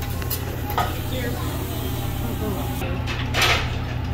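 Restaurant table ambience at a hibachi griddle: a steady low hum with a few sharp clicks of metal utensils and faint voices, and a brief hiss about three and a half seconds in.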